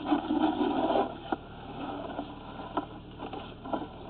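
Low background noise with a brief rustling in the first second, then a few faint, scattered clicks.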